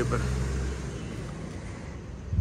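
Low, steady hum of an idling car engine under faint street noise.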